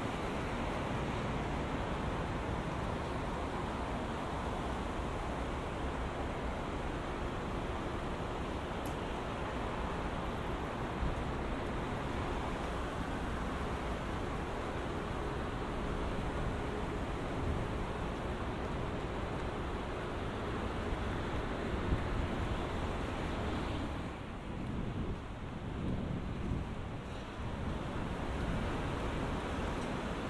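Steady city street ambience: an even rumble of traffic, easing briefly a few seconds before the end.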